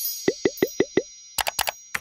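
End-card animation sound effects: a quick run of five bubbly pops, each bending upward in pitch, then a few sharp clicks, over a faint high ringing tone.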